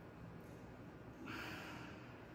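A man's short, forceful breath out, about half a second long and a little past the middle, straining through a seated knee tuck.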